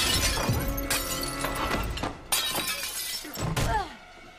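Glass shattering and crashing in several loud bursts, at the start, about a second in and just past halfway, as fight-scene sound effects over background music.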